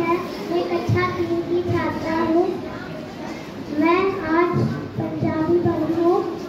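A young girl's voice speaking into a microphone, amplified in a hall, in phrases with short pauses.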